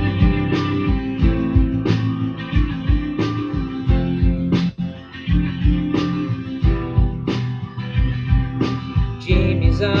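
Guitar strumming chords in a steady rhythm as the song's instrumental intro; a man's singing voice comes in near the end.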